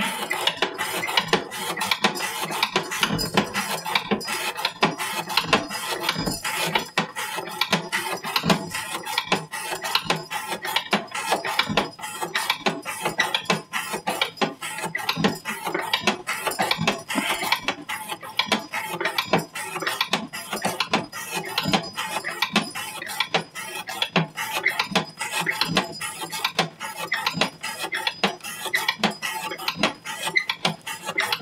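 Steady, rapid metallic clicking and clatter from a hand-operated rope-cutting test rig, its weighted carriage drawing a CPM 15V laminated knife blade through rope stroke after stroke.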